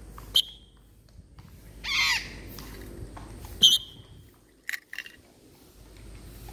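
Parrot calling in flight: one loud squawk about two seconds in, with two short, sharp high chirps near the start and just past the middle.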